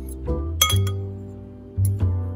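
Metal fork clinking sharply against a ceramic bowl while beating raw egg, a couple of distinct clinks, over steady background music.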